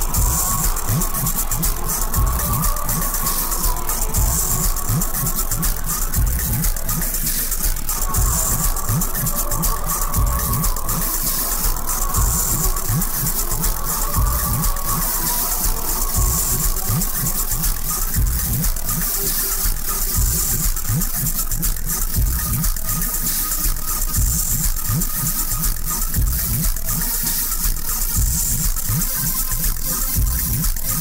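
Electronic dance track built on a dense, driving drum beat, loud and steady throughout.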